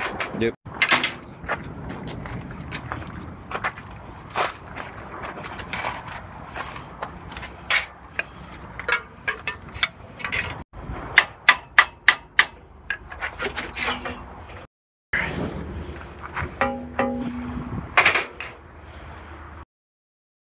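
Hammer blows on a screwdriver driven into a stuck truck quarter-fender mount to work it loose: a string of sharp metal-on-metal strikes, fastest and loudest about eleven to twelve seconds in, at about four a second.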